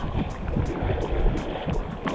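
Sea water sloshing around an action camera held at the waterline, with wind buffeting its microphone: an uneven low rumbling noise.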